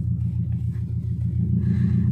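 Car engine running, heard inside the cabin as a steady low rumble.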